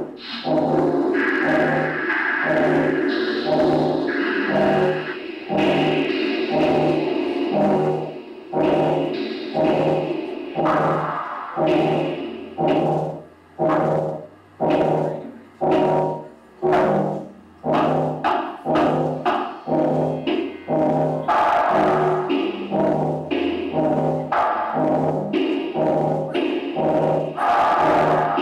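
Live electronic synthesizer music: held, layered tones over a low pulse that repeats about once a second. For several seconds in the middle the sound is chopped into short stuttering bursts, then the full held texture returns.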